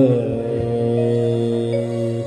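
Harmonium playing slow, steady held notes that step downward in pitch over a sustained low drone, with a sung 'aah' dying away right at the start.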